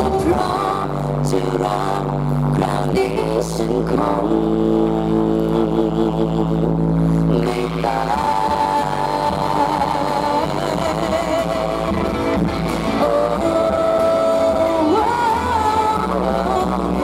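A woman singing a pop song into a microphone over a live band with drum kit and bass, amplified through a stage PA. In the second half she holds long notes with a wavering pitch.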